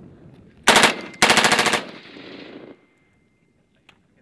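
Heckler & Koch G36 assault rifle (5.56 mm) firing two short bursts of automatic fire about a second in, the second a little longer, with an echo trailing off for about a second afterwards.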